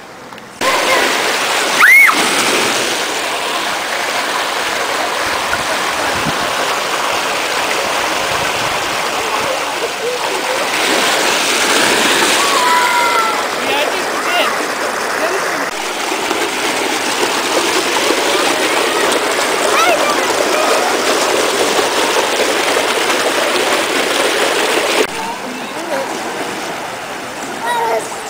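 Swimming-pool water splashing over a steady rush of running water.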